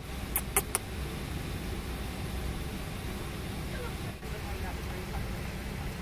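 Steady low rumble of airliner cabin noise inside a Boeing 737-700, with three quick sharp clicks just under a second in.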